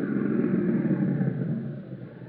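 Radio-drama sound effect of a jeep's engine running, then dying down near the end as the jeep pulls to a stop. It is heard through the narrow, muffled sound of an old radio transcription.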